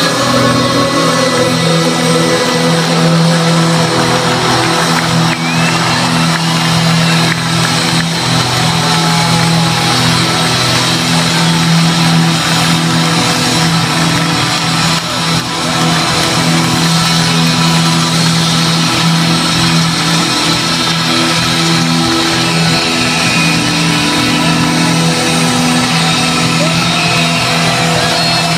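Live rock band in a stadium, recorded from among the crowd: a low chord is held steadily the whole time, under a constant wash of crowd noise.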